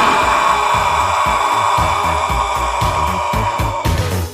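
Cartoon sound effect of a space pod flying off: a sustained rushing jet-like noise that cuts out near the end, over music with a regular low beat.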